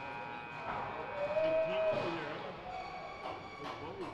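Ice hockey arena ambience: indistinct chatter of voices over music from the sound system, with a few sharp knocks of sticks and pucks on the ice.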